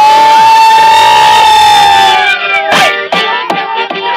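Live acoustic band of flute, violins and accordion playing: a loud chord held for about two seconds, then shorter, choppy notes.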